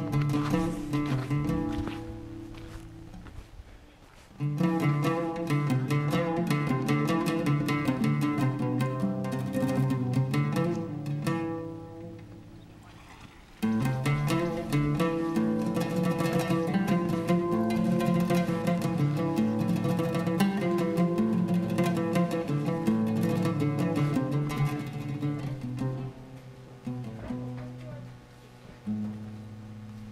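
Background instrumental music. It fades away twice and comes back abruptly each time, about four and a half seconds in and again about thirteen and a half seconds in.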